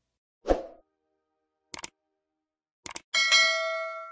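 Subscribe-button animation sound effect: a short soft pop about half a second in, two quick double clicks, then a bell ding near the end that rings on and fades away.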